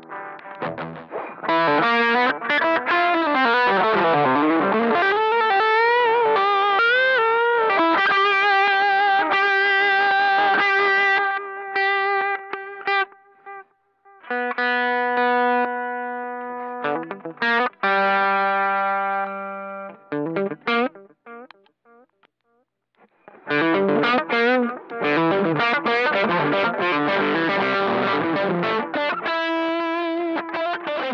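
Electric guitar played through a newly built effects pedalboard, tried out for the first time. It plays lead lines with bent, wavering notes, then held chords that ring out, pauses for about two seconds past the middle, and ends with a busy run of notes.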